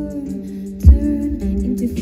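Live concert music: a woman sings a slow melody into a microphone over a held keyboard note. One deep drum hit comes about a second in.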